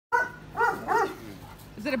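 A Doberman barking three times in quick succession: alert barks at a bird.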